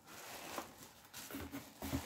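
Quiet handling noise from unpacking: faint rustling and light taps of cardboard and plastic packaging. A brief low murmur of a voice comes near the end.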